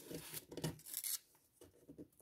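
Fingers rubbing and peeling the paper and tape covering a cell of a handmade paper advent calendar: a few soft, scratchy paper rubs.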